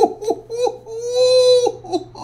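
A man's wordless vocalizing: a few short cries that slide downward, then one long held note about a second in, then another short cry near the end.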